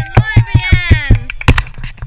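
Girls singing a hand-clapping game song, with quick, even hand claps about five a second.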